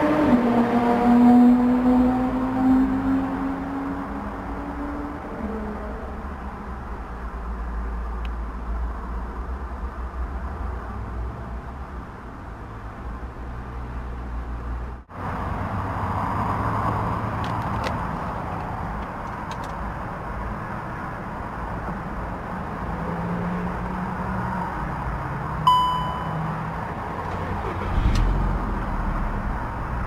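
2007 Volkswagen Beetle's 1.6-litre four-cylinder petrol engine idling, its pitch easing down over the first few seconds. Later a single short chime sounds from the instrument cluster as the ignition is switched on, and near the end the engine is cranked and starts.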